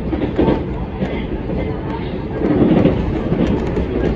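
Ride noise of a JR Central electric commuter train, heard from inside the carriage: a steady rumble of wheels on rails with light clicking, swelling louder about two and a half seconds in.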